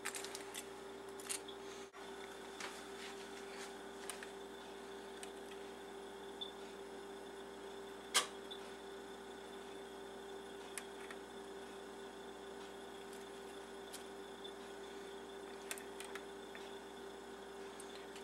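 A faint steady hum with sparse light clicks and taps from handling a spoon and foil cupcake liners, one sharper tap about eight seconds in.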